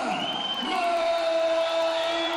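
A ring announcer's long drawn-out shout introducing a fighter, held on one pitch for over a second, over a crowd cheering in the hall.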